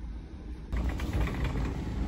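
Shopping cart rolling over a hard store floor: a low rumble with light rattles and clicks. It jumps abruptly louder about a third of the way in, where the footage cuts, after a quieter stretch of low store rumble.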